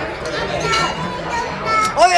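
Voices only: a young child and adults talking over one another while they play.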